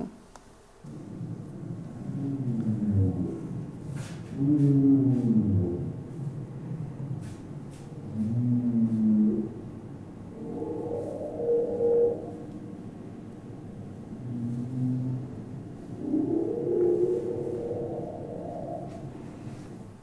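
Recorded song of a male humpback whale played over loudspeakers: a series of drawn-out calls, each a second or two long, sliding up and down in pitch with short gaps between them, starting about a second in.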